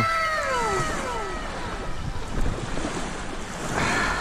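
Wind buffeting the microphone over the steady wash of the sea. A high, falling, whistle-like call glides down in pitch during the first second and a half.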